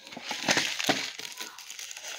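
Plastic shrink-wrap on an instant noodle cup crinkling and crackling as a hand grips the cup and turns it over.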